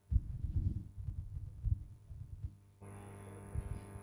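Faint, irregular low thumps for a couple of seconds, like handling noise on a microphone. Then, about three seconds in, a steady low hiss and hum begins as the soundtrack of a playing video starts.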